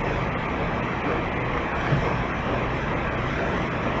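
Steady rushing noise with a low rumble underneath, like passing road traffic, holding at an even level.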